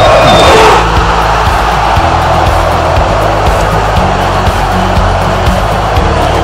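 Football stadium crowd cheering a goal, loudest in the first second and then holding steady, over backing music.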